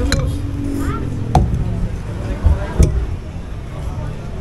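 Two sharp knocks of tableware on the table, about a second and a half apart, over a steady low rumble and faint voices in the background.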